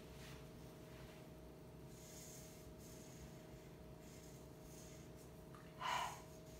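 Felt-tip marker writing on chart paper, a few faint scratchy strokes over a steady low electrical hum, with a short breath just before the end.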